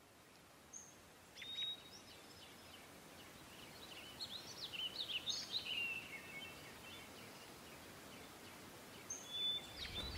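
Quiet outdoor ambience with birds chirping: short high calls come and go for the first several seconds and return briefly near the end.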